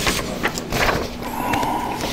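Loose sheets of paper rustling and crackling as they are handled and sorted close to a microphone, with irregular sharp crinkles and taps.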